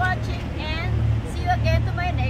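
A woman talking, over a steady low rumble.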